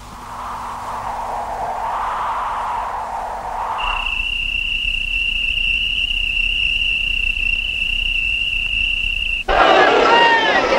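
A soft rushing noise swells and fades for about four seconds. A single steady, high, whistle-like tone then holds for about five and a half seconds over a faint low rumble. Near the end it cuts off suddenly into a crowd's voices and shouts.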